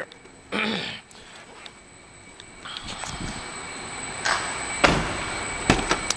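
A door of the 2008 Jeep Wrangler Unlimited being handled, amid shuffling movement that grows louder: a heavy clunk about five seconds in and a sharper click just before the end.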